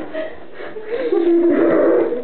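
A person's wordless voice, drawn out and gliding in pitch, louder in the second half.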